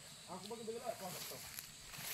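A faint, distant person's voice speaking briefly in the first half, over a quiet outdoor background with a faint steady high hiss.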